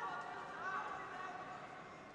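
Arena crowd noise with voices calling out from the stands, loudest in the first second.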